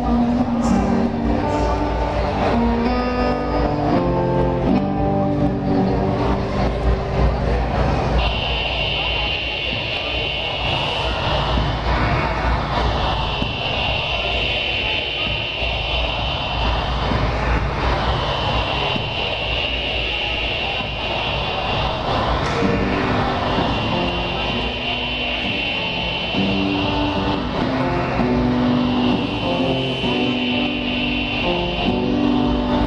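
Live electronic rock music played loud on stage, with electric guitar. About eight seconds in, the melodic notes give way to a high held tone with a slow sweeping whoosh that repeats about every five seconds. The melody comes back a little over twenty seconds in.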